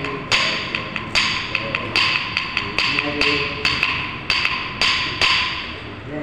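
Sharp percussion strokes beating out the rhythm of a Kuchipudi dance piece, two to three a second in an uneven pattern, each with a short ring. The strokes thin out and grow softer near the end.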